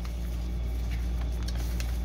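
Faint rustling and small clicks of a mail package being opened by hand, over a steady low hum.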